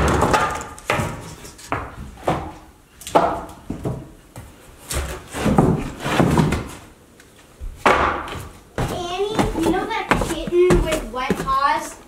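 Old wooden tongue-and-groove boards being handled and stacked, with a series of sharp wooden knocks and clatters as boards are set down. Voices talking come in near the end.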